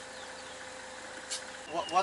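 Steady hum of a car idling, heard from inside the cabin, with a faint constant whine over it. A few spoken words come in near the end.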